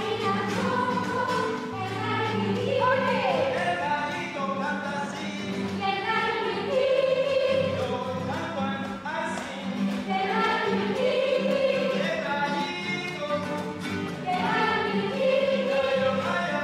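Girls' children's choir singing a song together, accompanied by an acoustic guitar.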